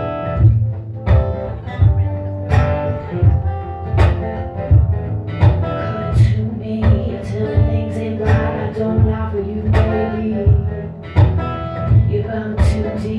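Acoustic guitar strummed in a steady rhythm, joined partway through by a woman singing.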